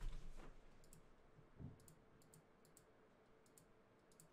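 Faint, sharp clicks of a computer mouse, a dozen or so, several coming in quick pairs, over near-silent room tone.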